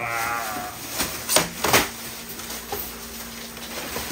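Clear plastic wrapping being pulled off a large cabinet incubator, crackling in a few sharp, loud rustles about a second in. It opens with a short pitched sound lasting about half a second.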